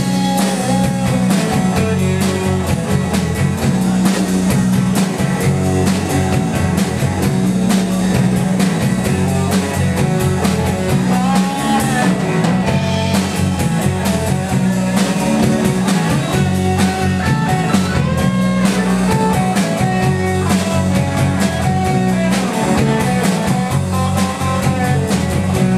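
Live blues-rock band playing: an electric guitar plays a wavering lead line over bass guitar and a drum kit, with no vocals.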